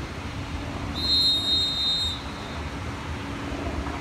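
A lifeguard's whistle gives one long, steady, high blast starting about a second in and lasting just over a second, a signal to get swimmers out of the water. A steady low hum runs underneath.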